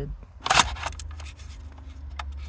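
Handling noise: a short, loud scrape or clatter about half a second in, followed by a few light clicks, over a low steady rumble.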